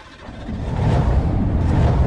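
A deep car-engine rumble sound effect that swells up over about half a second and then holds loud.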